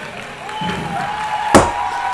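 Live swing jazz band playing, with one long held note and a single sharp drum hit about one and a half seconds in.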